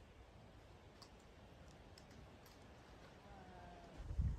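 Near silence with a few faint, scattered clicks and a faint short whistle near the end.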